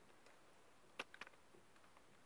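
Near silence with a few faint clicks about a second in, as a drill chuck is tightened by hand onto a socket-drive adapter.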